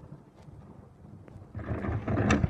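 Faint low rumble, then about a second and a half in a loud rumbling boom from fireworks going off.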